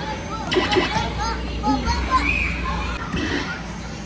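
Young children's voices, short wordless calls and squeals in a busy stretch about half a second to three seconds in, over the steady din of other children playing.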